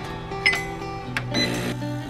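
Background music, with a sharp ringing clink about half a second in and a short metallic clatter about a second and a half in, from an espresso machine's portafilter and a ceramic cup being handled at the machine.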